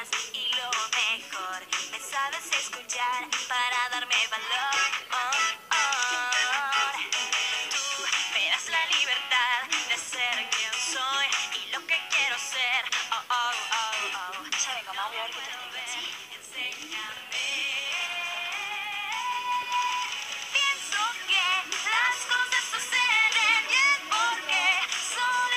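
Teen pop song with girls singing in Spanish over a full backing track.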